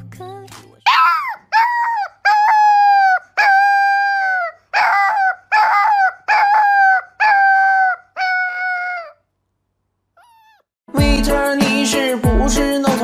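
Husky-type puppy howling: a string of about ten short, high howls, each holding a steady pitch and dropping at the end, stopping about nine seconds in. Music starts near the end.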